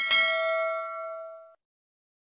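A single bell-ding sound effect for a subscribe button's notification bell: one clear chime that rings out and fades away over about a second and a half.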